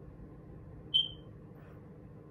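A single short, high-pitched chirp about a second in, fading quickly, over a faint steady room hum.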